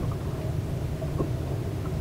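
Steady low rumble aboard a small fishing boat, with a few faint short knocks, one about a second in.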